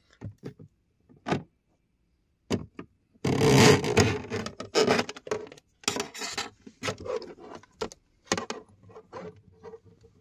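Scraping, clicking and clattering from a wire-fishing rod, wires and plastic dash trim being handled inside a car. About three seconds in there is a louder rustling scrape lasting about a second, and after it come irregular knocks and scrapes.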